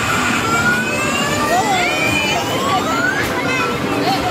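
Electronic sound effects from arcade game machines: long synthetic tones swooping down and rising again, over the steady din of an arcade.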